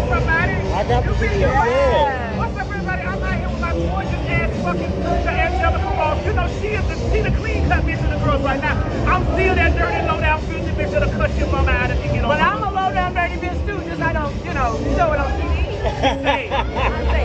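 People's voices and street chatter over a steady low rumble of city traffic.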